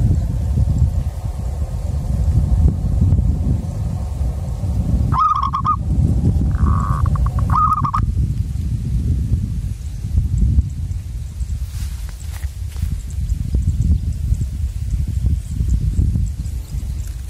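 Wind buffeting the microphone in a steady low rumble. About five seconds in, and again about seven and a half seconds in, a bird gives a short call.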